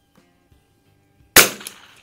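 A single shot from an Anschutz 64 MP .22 rimfire bolt-action rifle about a second and a half in: one sharp crack with a short tail and a fainter second crack a moment later.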